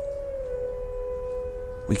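A dog howling: one long note held at a steady pitch throughout, with a slight dip near the start.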